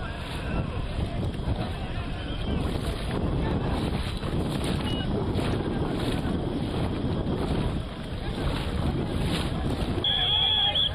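Wind buffeting the microphone, with water noise, recorded from a boat out on the river.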